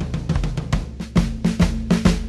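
A rock band playing live, drum-led: a drum kit beats a quick steady pattern of bass drum and snare, about four hits a second, over low bass notes. A higher held note joins about halfway through.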